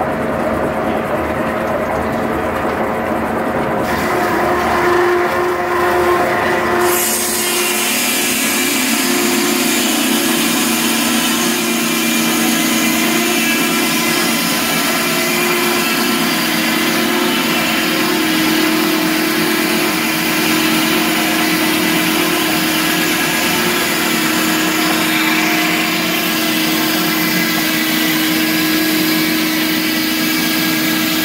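Circle sawmill's large circular blade spinning, then about seven seconds in it bites into the log and saws a board off, a loud steady ripping noise over a humming tone that runs on to the end.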